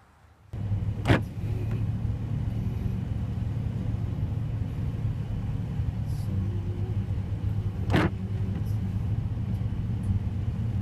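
Car driving on a road, heard from inside the cabin: a steady low rumble of engine and tyres that starts suddenly about half a second in, with two sharp clicks about seven seconds apart.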